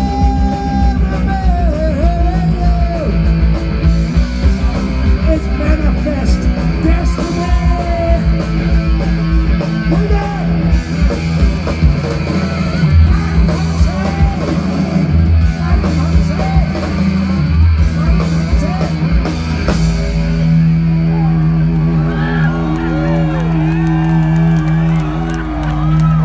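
Punk rock band playing live at full volume: distorted electric guitars, bass and fast drums, with a singer's voice early on. About twenty seconds in the drumming stops and a chord rings on.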